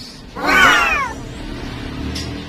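A high voice exclaiming a single drawn-out "wow" that rises slightly and then falls in pitch, about half a second in.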